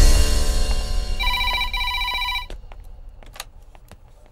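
Desk telephone ringing, one double ring about a second in, over background film music that starts with a hit and then fades away.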